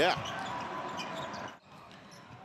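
Arena game sound at a basketball game: crowd noise with a basketball bouncing on the hardwood court. The level drops suddenly about one and a half seconds in.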